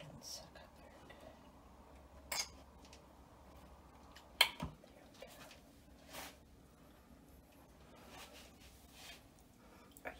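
Handling noises: a few short clicks and knocks as a plastic jar of wound cream and a syringe are handled on a countertop. The loudest knock comes about four and a half seconds in.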